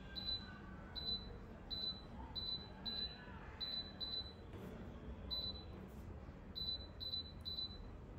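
Key-press beeps from a Philips OTG oven's touch control panel: about eleven short, high beeps at an uneven pace, one for each press as the cooking timer is stepped down a minute at a time.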